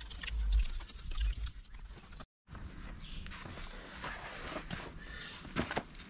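A cloth wiping over a van's painted metal side panel, with low wind rumble on the microphone in the first second. After an abrupt cut, light shuffling and a few soft knocks near the end.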